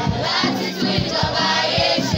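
A children's choir singing a Christmas carol together, over a steady low beat of about three to four strokes a second.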